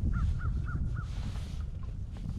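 A bird gives four short calls in quick succession, about a quarter second apart, during the first second. Steady wind rumble on the microphone runs underneath.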